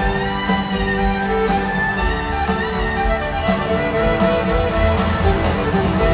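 Live country band playing an instrumental break, a fiddle carrying sustained and sliding lead lines over guitars, bass and a steady drum beat, heard from the crowd in a large arena.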